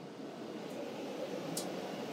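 Steady rushing noise like running fans or moving air, growing a little louder.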